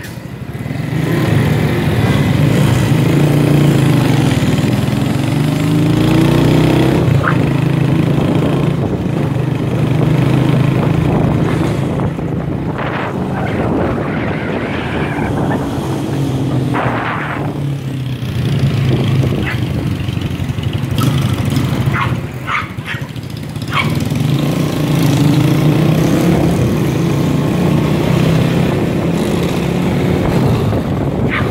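Small motorcycle engine running under way, its pitch rising and falling in stretches as it speeds up and eases off. A few short sharp sounds are scattered through it.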